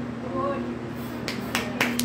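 Rhythmic hand clapping that starts just past a second in, sharp and even at about four claps a second, as the praise song gets under way. A low steady hum sits underneath.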